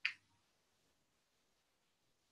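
A single sharp click right at the start, dying away within a fraction of a second; otherwise near silence.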